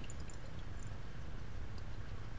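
Faint swirling of liquid in a glass Erlenmeyer flask, mixing in base during a titration, over a steady low hum, with a few tiny clicks.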